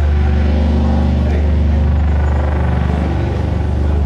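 A loud, steady low drone played over a club PA as part of a pre-show intro recording. It sits between spoken emergency-alert announcements.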